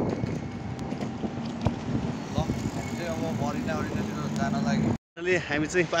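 Steady city street traffic noise with a few light clicks, and people talking in the background from about halfway through. It cuts off abruptly near the end, just before a man starts speaking close up.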